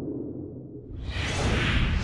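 Whoosh sound effect of an animated logo sting, swelling up from about a second in over a low rumble.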